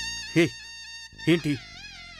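Background music: a long, high held note dying away, then a short warbling tone near the end.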